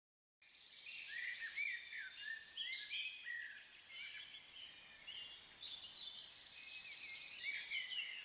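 Several songbirds singing and chirping together, faint: overlapping short whistled phrases, quick rising and falling notes and fast trills, starting about half a second in.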